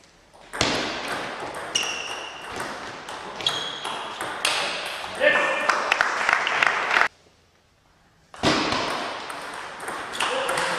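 Table tennis balls clicking off bats and tables in rallies, with short pinging tones, in a large hall. The sound cuts to near silence abruptly twice, briefly at the start and for over a second after the seven-second mark.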